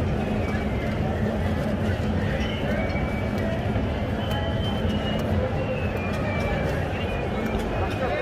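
Busy city street ambience: a steady low rumble of traffic with people talking in the background and faint music.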